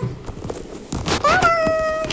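A few light clicks and knocks, then a child's voice rising into one high, steady note held for nearly a second.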